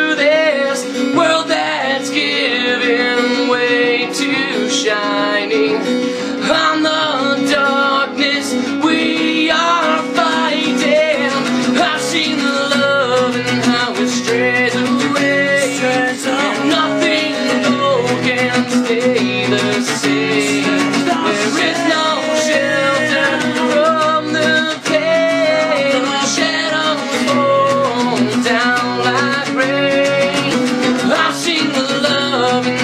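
Acoustic guitar strummed steadily while a man sings a song over it.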